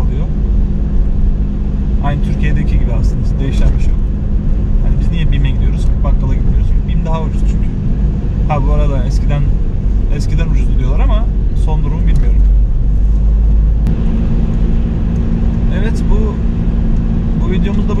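Car engine and road noise heard inside the cabin while driving, a steady low rumble whose engine note steps up about fourteen seconds in.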